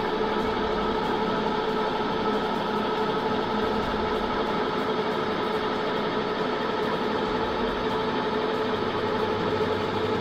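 Electric motor drive of a camper's pop-top roof running steadily as the roof is raised: an even mechanical hum with a constant whine that does not change over the whole stretch.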